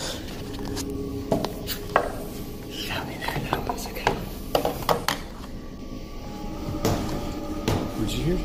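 Indistinct voices with scattered sharp knocks and clicks, over a steady low hum.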